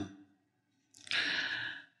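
A man's in-breath through a close clip-on microphone, taken about a second in and lasting most of a second, just before he speaks again.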